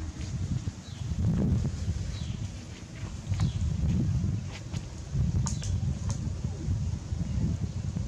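Wind rumbling on the microphone in uneven gusts, with a few faint high chirps and short clicks.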